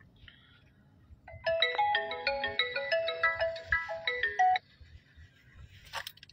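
A phone ringtone: a quick melody of short clear notes that starts about a second and a half in and cuts off suddenly after about three seconds.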